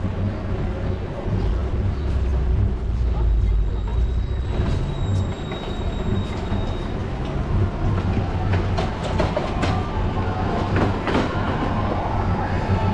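Wind buffeting an action-camera microphone on a moving bicycle, a steady low rumble. From about two-thirds of the way in comes a run of clicks and rattles as the bike rolls over paving tiles.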